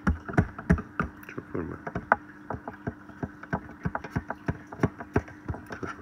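Handling of a phone held to a microscope eyepiece: irregular clicks and light knocks, several a second, over a steady low hum.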